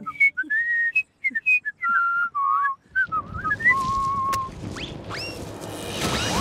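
A cartoon character whistling a jaunty tune, one clear note hopping up and down in short phrases. About halfway in, a low rumble starts underneath and grows, the ground shaking as a monster burrows up toward the surface.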